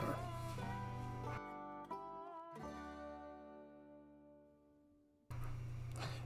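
Soft background music: a few plucked notes ring on and fade away to near silence, then a low steady hum comes back near the end.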